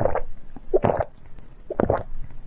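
Close-miked swallowing of a drink sipped through a straw: three gulps about a second apart.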